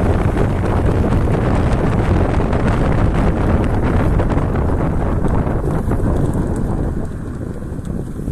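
Wind buffeting the microphone over the road rumble of a moving car, a steady rushing noise that eases off about seven seconds in as the car slows into a turn.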